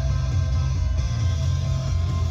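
Music playing from the truck's FM radio through the cabin speakers, steady and loud with a strong bass.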